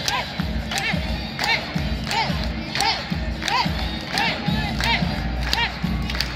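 Arena crowd shouting in rhythm: a short rising-and-falling shout about every 0.7 seconds, each with a sharp clap-like hit, over a steady low beat.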